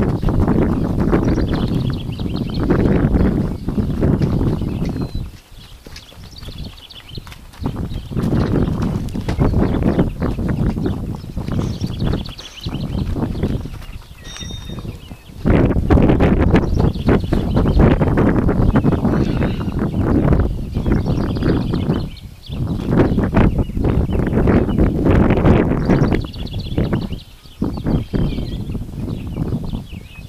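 Hoofbeats of a saddled Nokota stallion moving around a dirt round pen on a lunge line, under loud low rumbling noise that drops away briefly a few times.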